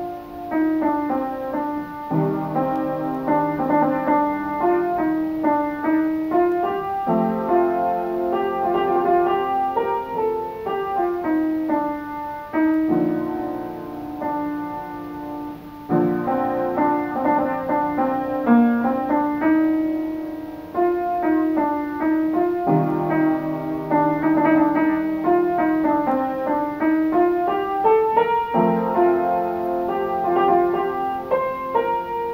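Solo upright acoustic piano playing a flowing piece: a melody over broken chords, with a fresh bass chord struck every few seconds.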